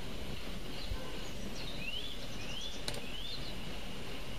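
A steady low hiss, with a small bird chirping three short rising notes in the middle and a single faint click between the second and third chirps.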